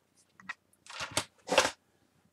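Scrapbook paper and plastic packaging rustling as craft pieces are handled on a cutting mat: a small tick, then two short rustles about half a second apart.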